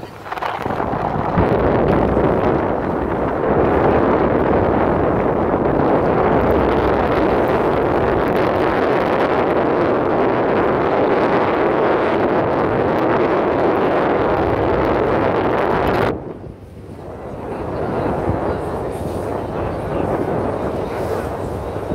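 Loud steady rushing of wind over the microphone and the noise of a moving boat on the open sea. It cuts off sharply about sixteen seconds in, then builds back up over the last few seconds.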